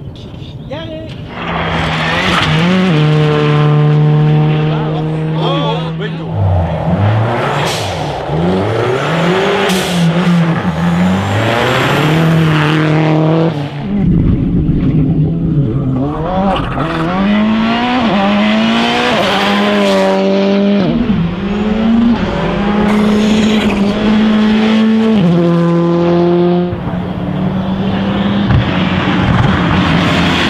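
Turbocharged four-cylinder rally cars at full throttle on a stage, one after another. The revs climb, hold and drop again through quick gear changes, with sudden cuts between cars.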